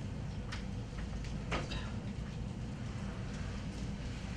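Room tone of a lecture hall: a steady low hum with a few faint, short clicks in the first half.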